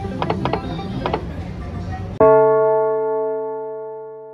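Three-reel slot machine spinning, with its mechanical whirr and a few sharp clicks in the first second as the reels come to a stop. A little over two seconds in, that sound cuts off abruptly and a single loud, sustained chord sounds and slowly fades away.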